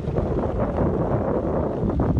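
Wind buffeting the microphone of a bicycle moving along a gravel road, with the rumble and crackle of tyres on loose gravel underneath.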